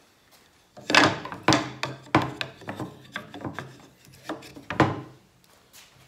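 A plywood reference piece being handled and set into a wooden miter-gauge fixture on a table saw: a string of sharp wooden knocks and rubs, the loudest about a second in. The saw is not running.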